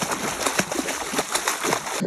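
Water splashing and sloshing as a person paddles and kicks while lying on an inflatable float, a continuous run of irregular small splashes.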